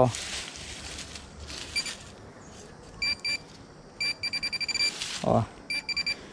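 Minelab Pro-Find 35 pinpointer beeping as it is swept over a small buried metal target: two single high beeps, then a fast run of about ten beeps a second, then a few more near the end.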